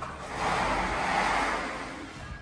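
A rushing, whooshing noise that swells up and fades away over about a second and a half.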